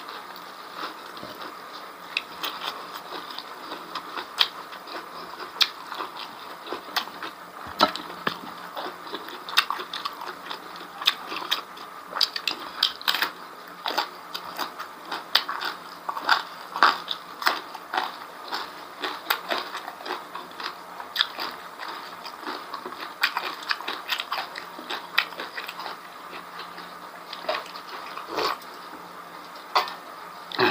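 A person chewing and crunching mouthfuls of food, raw leafy greens among them, with frequent sharp mouth smacks and clicks.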